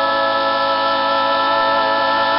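Gospel quartet of male and female voices holding the long final chord of a song together, loud and steady in pitch, with a slight waver coming in near the end.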